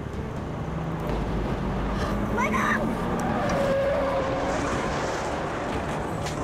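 Vehicle engine running with tyres screeching: a short rising screech about two and a half seconds in, then a longer, lower squeal. This is a van braking and swerving to avoid a car that cut across its path.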